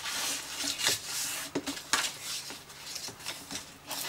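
Thin cardstock being folded and creased by hand: papery rustling and scraping, with a few sharp crinkling clicks as the folds are pressed in.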